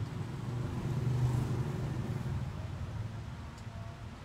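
Low rumble of a passing road vehicle's engine, swelling about a second in and then fading.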